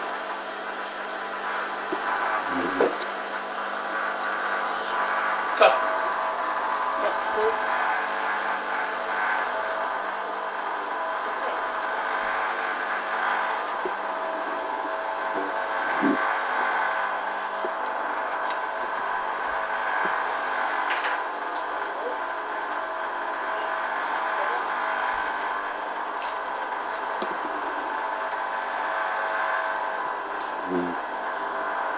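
Hoover DYN 8144 D washing machine running the early part of its cotton pre-wash: a steady hiss with several held tones, and a few faint knocks.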